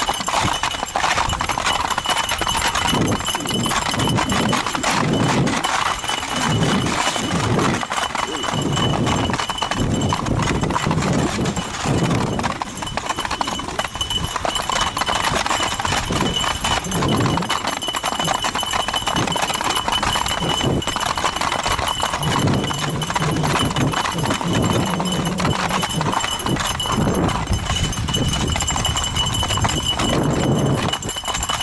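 Nordic ice skates scraping and gliding over lake ice in repeated strokes, mixed with the clatter of the dogs' feet running on the ice.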